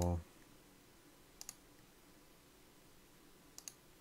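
A few faint clicks at a computer, in two close pairs: one about one and a half seconds in and another near the end, over quiet room tone.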